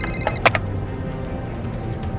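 A wall-mounted hotel house phone ringing with a high electronic tone. The ring breaks off about half a second in, with a sharp click as the handset is lifted off the hook. Background music plays throughout.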